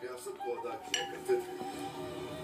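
A few light clinks of plates, bowls and cutlery as people help themselves to food, over background music.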